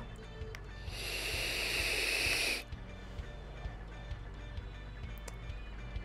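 A draw on a vape tank with a mesh coil firing at 65 W: a steady hiss of air and vapor starting about a second in and lasting about two seconds before it stops. Faint background music underneath.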